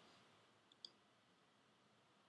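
Near silence with a faint click a little under a second in, from a computer mouse button being pressed, just after a fainter tick.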